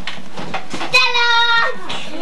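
A child's high-pitched voice holding one long note for nearly a second, about a second in, amid scattered clicks and faint chatter.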